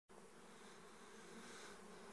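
Faint, steady buzzing of a small swarm of honeybees clustering on a tree branch.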